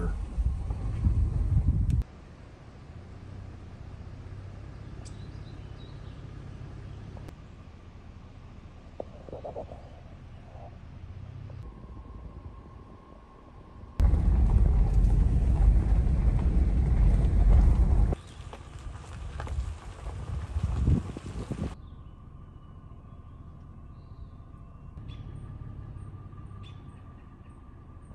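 Vehicle driving on a dirt road, heard from inside the cabin: a steady low rumble of engine and tyres. It is loud for the first two seconds and again from about 14 to 18 seconds, with quieter road noise between, and the level changes abruptly several times.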